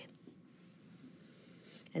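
Faint, brief scratch of a stylus on a tablet's glass screen about half a second in; otherwise near silence.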